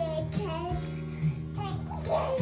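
An infant's high-pitched cooing and squealing, a few short gliding sounds, over steady background music.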